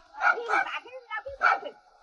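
Farm dog barking a few times in short separate barks, with voices between.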